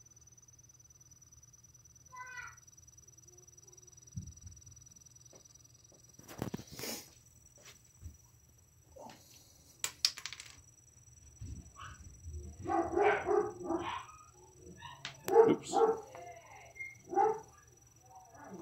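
Small 12 V computer fan spinning the magnets of a homemade magnetic stirrer, a faint steady hum with a thin high whine. A few knocks as the glass jar is handled, about seven and ten seconds in, then a run of short pitched calls from about twelve seconds in.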